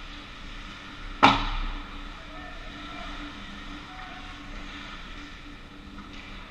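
A single sharp crack from the ice hockey play about a second in, with a short echoing tail, over the steady hum of an indoor ice rink.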